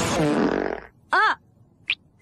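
Cartoon fart sound effect: a short, pitched blat about a second in that rises and falls. Before it, a loud rushing sound effect dies away, and two tiny high squeaks follow near the end.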